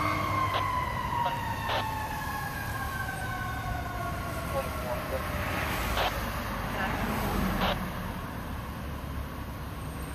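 Fire truck siren whose pitch glides slowly down and fades over about the first five seconds, over steady road traffic noise. A few short sharp sounds come in along the way.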